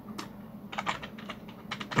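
Computer keyboard typing: a quick, irregular run of key clicks.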